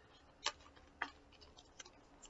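A few faint, sharp clicks, the two clearest about half a second apart, followed by smaller ticks near the end.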